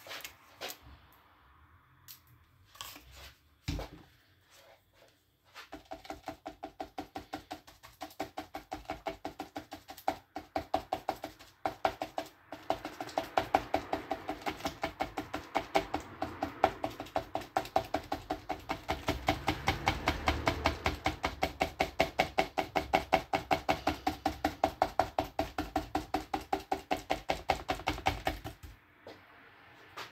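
Paintbrush dabbing thick acrylic paint onto paper on a hard board, a fast, even tapping of about four to five strokes a second with a short ring on each. It starts after a few single knocks about five seconds in and stops just before the end.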